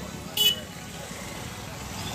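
Busy street din of motorcycles moving slowly through a crowd, with voices in the background. A short vehicle horn toots once, about half a second in.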